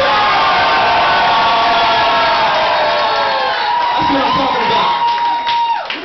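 A crowd cheering and whooping, many voices overlapping. Near the end, one voice holds a long high call that drops off.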